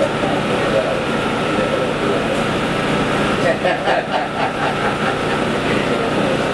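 Steady room noise with indistinct background voices, clearest about halfway through.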